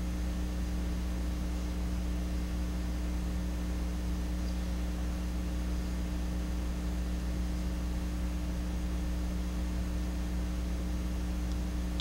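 Steady electrical mains hum with a constant hiss: room tone with no other sound.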